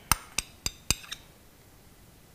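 A metal spoon clinking against a serving bowl: five quick, sharp taps with a short metallic ring, over about a second.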